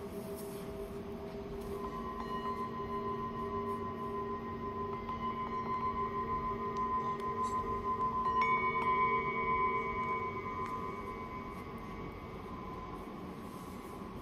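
Small handmade Tibetan singing bowls, the 'rain shower' bowls of a twelve-bowl set, struck one after another with a mallet. Their bright tones overlap and sustain over the lower hum of larger bowls still ringing. The loudest strike comes about eight seconds in, then the sound slowly dies away.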